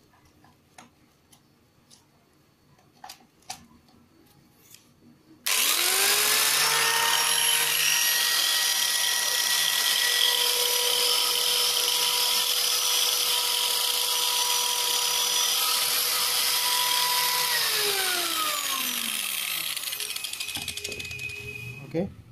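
Orion HG-954 angle grinder with a disc fitted, run free with no load for a speed test: a few faint handling clicks, then about five seconds in the motor starts and whines up to full speed almost at once. It holds a steady, quite fast high whine for about twelve seconds, then winds down in falling pitch over a few seconds.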